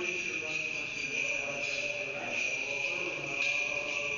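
A steady high-pitched whine runs without a break under faint, echoing Orthodox liturgical chanting.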